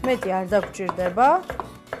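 A kitchen knife chopping on a wooden cutting board, slicing black olives in quick knocks. Background music with a voice runs underneath.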